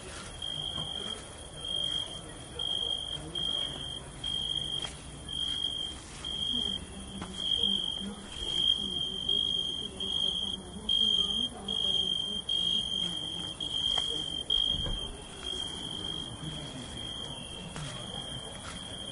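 Crickets chirping: a high, steady trill broken into pulses about twice a second.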